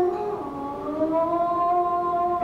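A woman singing one long held note, gliding slightly upward about half a second in, over sustained accompaniment.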